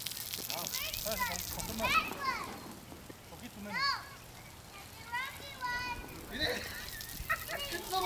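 Children's high voices calling and squealing several times over the steady hiss of lawn sprinklers spraying water.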